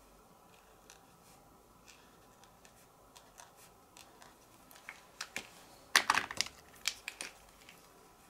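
Faint taps of a Posca paint pen's tip dabbing dots onto card, then, about six seconds in, a quick flurry of louder sharp plastic clicks from pens being capped and handled on the craft table.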